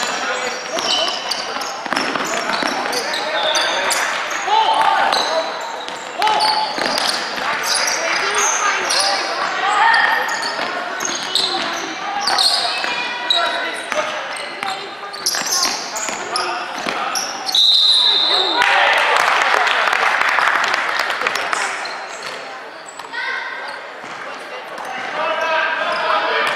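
Live indoor basketball in a gym: a basketball dribbling on the hardwood court, sneakers squeaking, and players and spectators calling out. About 17 seconds in, one short blast of a referee's whistle.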